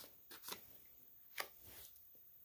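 A few faint, brief rustles of a paper flash card being picked up from and laid down on a carpet.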